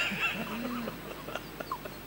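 A man laughing softly into a handheld microphone, with a few short, high-pitched squeaky sounds in the second half.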